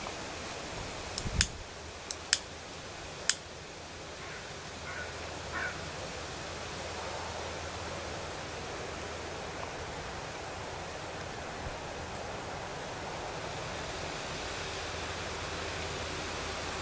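Quiet outdoor garden ambience: a steady, faint hiss of air and background noise. In the first few seconds there are five sharp, short clicks.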